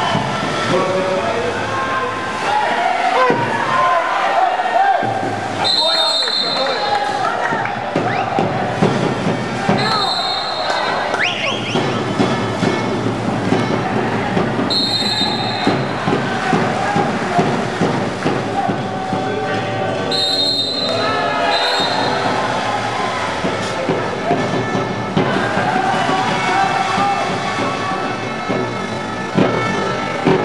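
Water polo match noise: spectators and players shouting and calling throughout, with a referee's whistle giving five short blasts, the last two close together.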